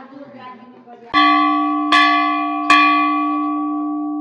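Hanging temple bell struck three times, a little under a second apart, each stroke ringing on and the tone fading slowly.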